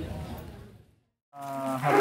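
Low background noise fades out to a moment of silence about a second in, where the picture cuts. Then a man's voice starts with a held, steady-pitched hesitation sound before he speaks.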